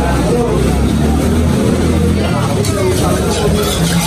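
Market ambience: people talking over a low engine rumble from a vehicle, the rumble heaviest in the first couple of seconds.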